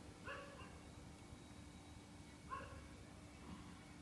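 Near silence: room tone with a steady hum, and two faint short calls about two seconds apart.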